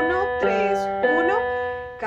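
Casio CTK-150 electronic keyboard playing a left-hand arpeggio, single chord notes struck one after another, three in all, each held ringing over the next.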